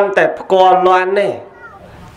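A Buddhist monk's voice intoning a Khmer phrase in a drawn-out, sing-song way, holding notes at a steady pitch before letting them fall away, then pausing briefly near the end.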